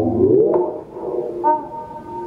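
Synthesizer holding a loud, steady note that slides upward in pitch about half a second in and fades away, followed by a shorter, higher note about one and a half seconds in.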